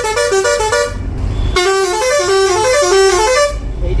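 Bus's Roots Hexatone musical horn playing a tune of stepped notes in two phrases, with a short break about a second in. It is one of the horn's several switch-selected tunes.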